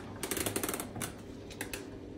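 A wooden door being pushed slowly open, giving a quick run of small clicks and creaks in the first second, then a few single clicks.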